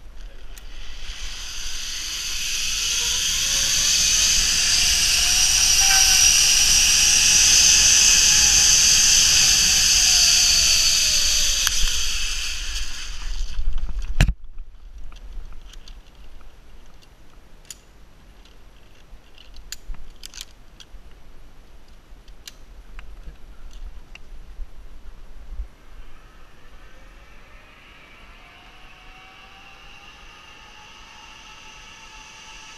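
Zip line trolley pulleys running along a steel cable: a loud hissing whir whose pitch rises as the rider picks up speed, then falls as the rider slows. It ends with a sharp clack about fourteen seconds in, followed by scattered light clicks. Near the end a fainter whir starts to rise again.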